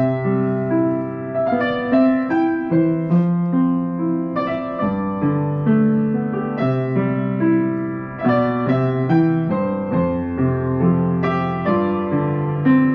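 Yamaha U3M upright piano being played: a flowing melody over sustained chords, with new notes struck several times a second. The piano is a little off and due for a tuning.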